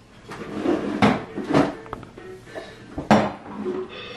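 Small metal toy pots and bowls clattering against each other and the plastic toy kitchen as a toddler handles them: a few separate sharp clanks, the loudest about three seconds in.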